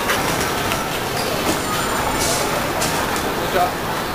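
Busy pedestrian street ambience: a steady wash of noise with indistinct voices of passers-by, and a short burst of hiss about two seconds in.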